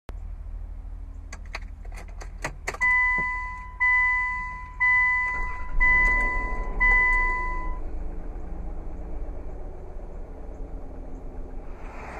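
Keys rattling and clicking, then a dashboard warning chime sounding five times about a second apart, each ding fading, over a steady low hum inside a 2002 Land Rover Freelander's cabin.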